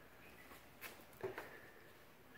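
Near silence: room tone, with two faint short clicks around the middle.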